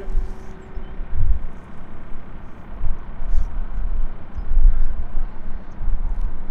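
Irregular low rumble of wind buffeting the microphone, swelling and fading in uneven gusts.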